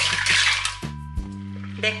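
Mussels tipped from a colander into a stainless steel saucepan, the shells clattering against the pot for under a second, over background music.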